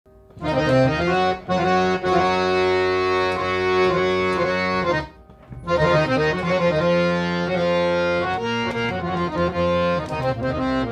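Hand-pumped harmonium with German Jubilate reeds playing held chords. It starts about half a second in, breaks off briefly around the middle, then plays on.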